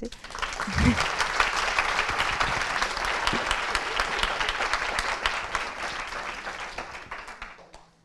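Audience applauding: a dense, steady patter of many hands clapping that starts at once and dies away near the end. There is a short low thump about a second in.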